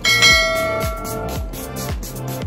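A single bright bell ding rings out just after the start and fades over about a second, over background music with a beat of deep bass notes sliding down in pitch.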